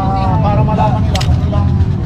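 People talking close by over a steady low rumble of street noise, with one brief click about a second in.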